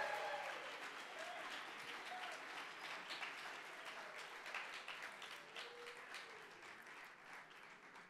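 Audience applauding, the clapping fading gradually and thinning out, with a few faint voices mixed in.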